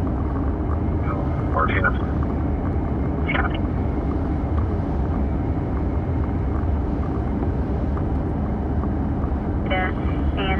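Steady road noise inside a car cruising on a rain-wet freeway: a continuous low rumble with tyre noise from the wet pavement. Two brief snatches of a voice come through, a little under two seconds in and again at about three seconds.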